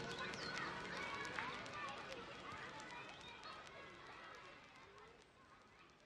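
A lofi background-music track fading out at its end. The beat and notes have dropped away, leaving a sampled layer of murmuring voices, small clicks and chirps that dies away steadily.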